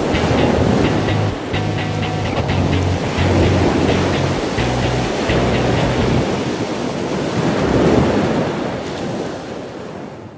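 Ocean waves surging and washing in, in several swells, over music with a low bass line. Everything fades out near the end.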